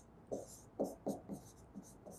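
A pen writing on the screen of an interactive touchscreen board: about five short, faint strokes as a short word is written by hand.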